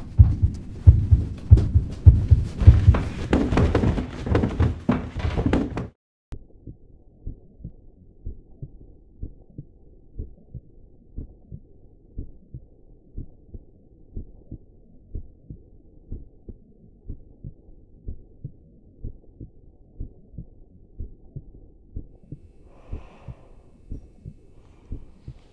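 Heartbeat sound effect on a film soundtrack. For the first six seconds it is loud and thick, with a rushing noise over the beats, then it cuts off suddenly. After that a quieter, steady heartbeat of low thumps goes on, about two to three a second.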